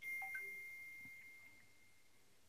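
A faint electronic chime: a single high tone that comes in suddenly and fades away over about a second and a half.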